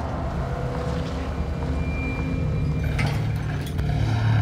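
Pickup truck towing a livestock trailer driving past, a steady low rumble of engine and tyres, with a brief rattle about three seconds in and a faint held musical tone underneath.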